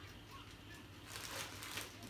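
Faint rustling and crinkling of the plastic bag wrapped around a cylinder head as it is handled, strongest in the second half, over a steady low hum.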